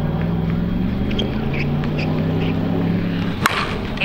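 Anarchy Fenrir slowpitch softball bat striking a pitched softball once, a single sharp crack about three and a half seconds in, over a steady low hum.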